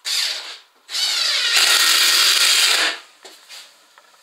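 Cordless drill running into the wooden planking of a boat hull: a short burst, then about a second in a longer run of about two seconds that rises in pitch as it spins up and then holds steady before stopping.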